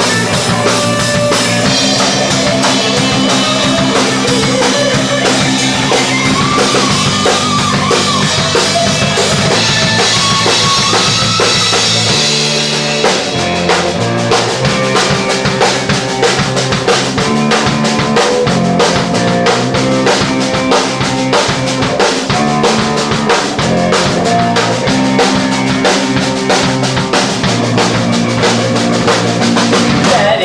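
Live rock trio playing an instrumental stretch: drum kit, electric bass and electric guitar, the drumming getting busier about halfway through.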